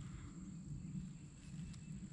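Faint outdoor background: a steady, high-pitched insect trill over a low, uneven rumble.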